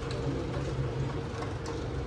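A steady low mechanical hum, with a faint metallic click about a second and a half in as a slip-on exhaust muffler is worked onto the motorcycle's link pipe.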